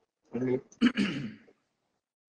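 A person clearing their throat: a short voiced sound, then a harsher rasping clear about a second in.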